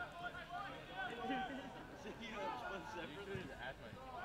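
Faint, scattered voices of players calling out across an outdoor soccer pitch while a free kick is set up.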